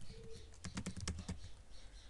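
Computer keyboard typing: a quick run of keystrokes around the middle, typing out the end of a word.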